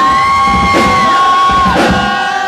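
Live industrial rock band on stage, caught on a camcorder: a long held high note that stops shortly before the end, a second one coming in right after, over crowd yells.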